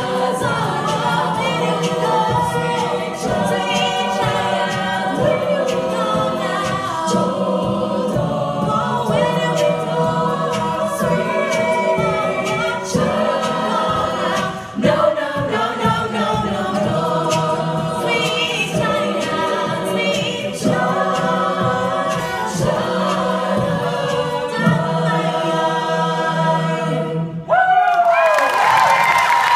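Female a cappella group singing in several vocal parts over a sustained low line, amplified through stage microphones. The song stops abruptly about a second before the end.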